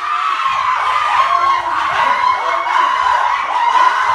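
A small group of young men screaming and cheering together without a break, celebrating a cricket victory.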